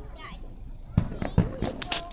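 Aerial fireworks exploding: two loud booms about a second in, less than half a second apart, followed by a quick run of sharp pops near the end.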